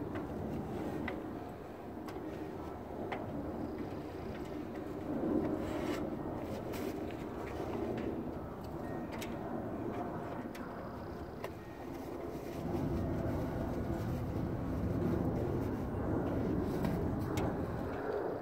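Rustling and crumpling of a bulky fabric trailer cover being handled and shoved onto a trailer roof, with scattered small knocks and clicks from the aluminium stepladder. A low rumble comes in about two-thirds of the way through and stays to the end.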